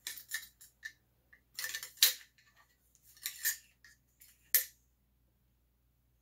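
Metallic clicks and clinks from an AR-style rifle being handled and set down on its bipod on a workbench, in several short clusters with the sharpest knocks about two seconds in and again about four and a half seconds in.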